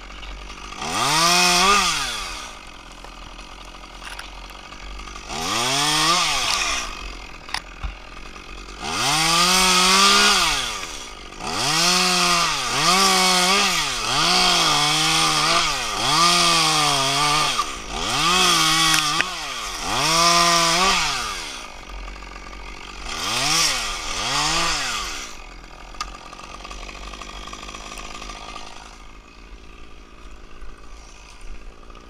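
Top-handle chainsaw cutting off spruce branches, revved up and let back down in about eleven short bursts, some held at full speed through a cut. Near the end it runs lower and steadily at idle.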